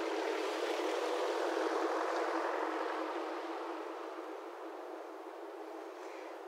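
Steady outdoor street ambience: an even wash of distant noise, thin with no bass, slowly fading away.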